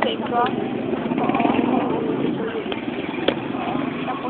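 People talking over the steady noise of street traffic. A sharp click comes about three seconds in.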